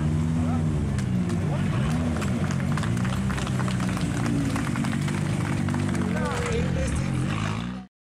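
Rally car engine running near idle, its pitch rising and falling with light blips of the throttle, under voices and scattered claps. The sound cuts off suddenly just before the end.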